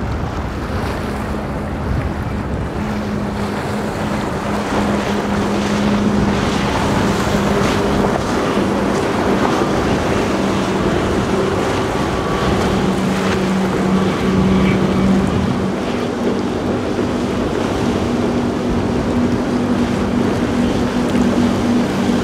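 Twin outboard motors on a Nimbus T11 running at speed, a steady engine drone with spray from the hull and wind on the microphone.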